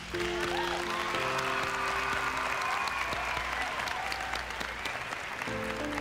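Audience applauding loudly at the end of a dance solo, starting suddenly and going on steadily, with music playing underneath.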